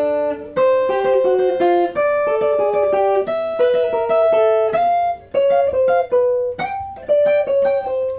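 Archtop electric guitar playing a jazz line in two-note shapes: a held top note with chromatic notes stepping down beneath it, repeated on different chord tones, the last note left ringing near the end.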